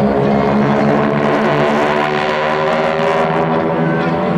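Piston engines of a four-plane formation of single-engine propeller aerobatic aircraft, making a loud, steady drone that shifts slightly in pitch as the formation manoeuvres overhead.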